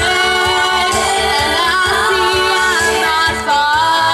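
A girl singing a melody with long held notes into a handheld microphone, amplified through a PA, over backing music with a steady low beat.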